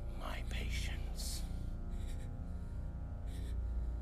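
Orchestral underscore holding a sustained chord over a strong bass, with breathy, whispered vocal sounds, most of them in the first second and a half.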